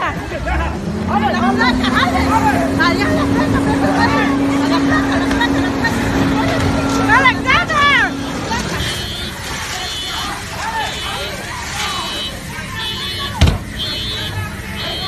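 People shouting excitedly over a steady drone in the first half. In the second half, repeated short high-pitched beeps sound about once a second, and a single sharp knock comes near the end.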